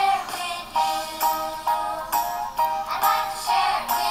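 A children's good-morning song with sung vocals over a steady, upbeat beat.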